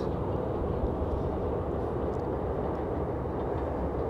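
Steady low rumble of distant city traffic, even throughout with no distinct events.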